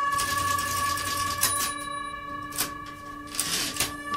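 Typewriter sound effect: a few separate clacks and rattles over a steady, held music drone.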